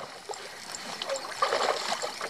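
Lake water lapping and splashing against a canoe, a little louder near the end.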